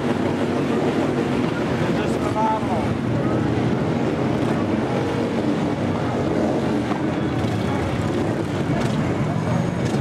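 Several motorcycle engines running in slow, crawling street traffic, making a steady, unbroken rumble mixed with the chatter of a crowd.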